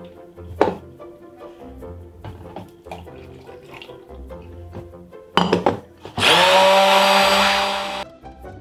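Hand-held immersion blender emulsifying hot milk and chocolate for a ganache in a plastic jug: a few knocks, then the motor starts about six seconds in, its whine rising as it spins up and then running steadily at full speed. Quiet background music throughout.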